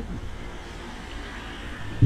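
Steady low background hum with a faint hiss: room noise picked up by the microphone in a pause between spoken sentences.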